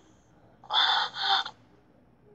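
A cartoon man's pained, laboured breathing: two quick gasping breaths in a row, about a second in.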